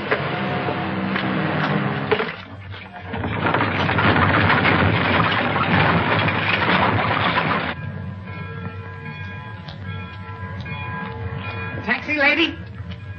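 Old film soundtrack: a loud, steady rushing noise that dips briefly and then cuts off suddenly about eight seconds in. Music with held notes follows it.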